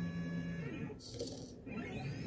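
AxiDraw pen plotter's stepper motors whining steadily as the pen carriage moves very slowly to start drawing a line, with a brief hiss about a second in.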